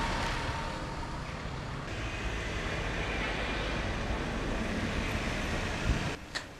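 Road traffic noise: a steady rumble of vehicle engines and tyres on asphalt, including a van driving past.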